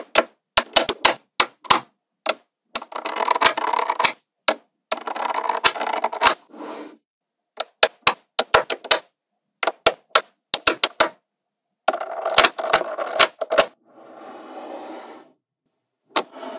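Small magnetic balls snapping together in sharp single clicks. Several times a run of many balls clatters together at once, giving a rattle of one to two seconds; the last rattle, near the end, is softer.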